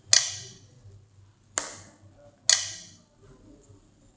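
Handheld biometric attendance terminal's key-press sound from its built-in speaker: three sharp clicks, each with a short ringing tail, as its touchscreen buttons are tapped, near the start, about a second and a half in, and about two and a half seconds in.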